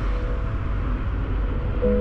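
A steady low rumble with a hiss, in a lull between the background music's notes, with one faint held note carrying on underneath.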